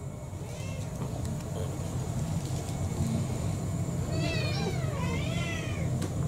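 Domestic cat meowing to beg for its dinner: a faint short meow about half a second in, then two longer meows near the end, over a steady low hum.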